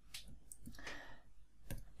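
A few faint clicks of a stylus tapping on a touchscreen while switching to the eraser and correcting handwriting.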